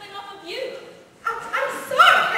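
Short high-pitched yelping cries that bend upward, a fainter one about half a second in and louder ones building near the end.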